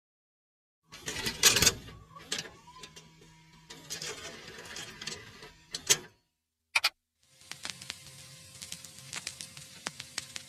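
Intermittent mechanical clicking and clattering over a faint steady hum, starting about a second in, with a short silent gap a little past halfway.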